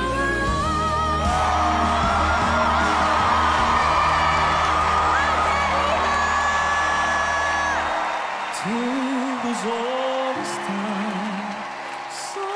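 One male singer holds a high, soprano-range note over a full orchestral backing while a live audience cheers, whoops and screams. About eight seconds in, the backing drops away and he sings softly in a low baritone voice: the same singer answering his own high voice in a two-voice duet.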